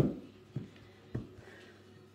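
Kitchen knife cutting through an onion onto a wooden cutting board: a sharp knock at the start, the loudest, then three softer knocks over the next second and a half.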